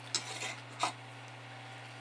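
A steady low hum with two faint clicks, one just after the start and one a little before the middle: small handling sounds at a workbench.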